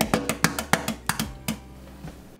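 Hard-boiled eggs tapped and cracked against the edge of a stainless steel sink: a quick, irregular run of sharp cracking taps, over background music with plucked guitar.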